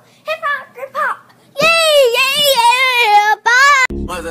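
A young girl's voice: a few short syllables, then about a second and a half in a loud, long, high note sung with a wavering pitch, held for about two seconds and cut off abruptly near the end.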